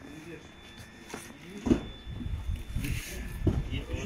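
Quiet at first, then a sharp knock about a second and a half in, followed by a low rumble, further knocks and brief, scattered voices as cardboard boxes are handled and loaded into a van.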